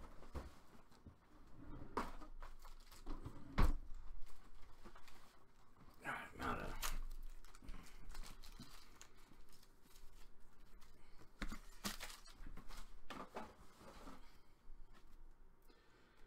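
Trading-card box and pack being torn open and the cards handled on a wooden table: intermittent tearing and crinkling rustles with scattered light taps and clicks.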